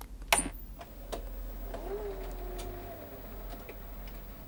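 The tape mechanism of a 1988 Panasonic AG500 TV/VCR combo reloading its cassette after power is restored. There is one sharp click, then a few lighter clicks and a faint motor hum that rises briefly and then holds steady.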